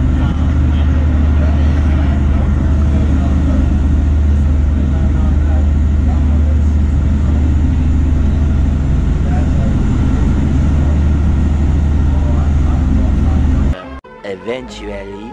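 Party boat's engine droning steadily inside the galley cabin, a loud low hum under faint background chatter. It cuts off abruptly near the end.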